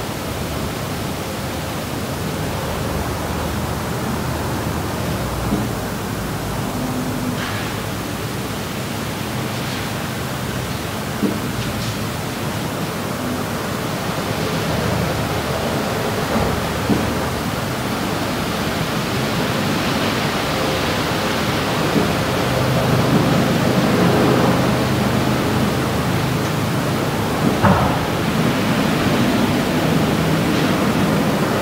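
Steady hiss of background noise that slowly grows a little louder, with a faint low hum and a few soft clicks and knocks.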